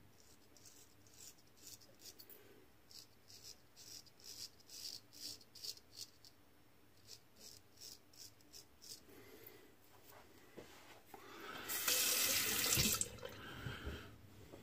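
Gold Dollar 66 straight razor scraping through lather and stubble on the neck in a run of short, faint strokes. A water tap runs for about a second and a half near the end.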